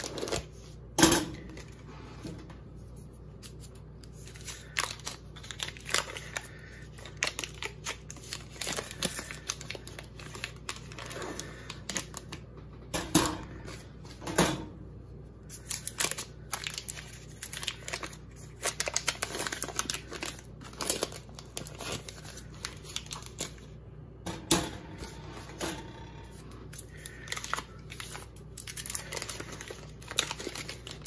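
Paper butter-stick wrappers crinkling and rustling as sticks of butter are unwrapped by hand, in irregular bursts with a few louder knocks now and then.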